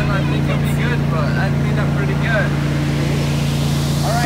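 Engine of a trailer-mounted hot-water pressure-washing rig running steadily, a constant low hum.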